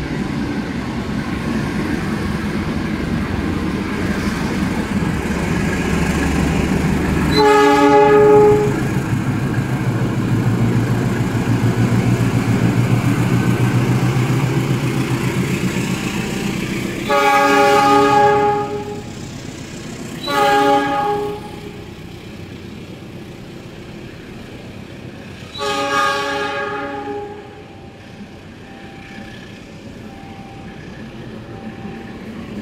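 A diesel locomotive's air horn sounds four blasts, each a chord of several tones: one about a quarter of the way in, two close together just past the middle, and a last one near the end. Under them runs the low rumble of the diesel engine and the passing train, heaviest in the first half.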